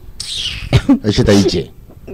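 A person's voice: a short breathy hiss, then about a second of wordless vocal sound.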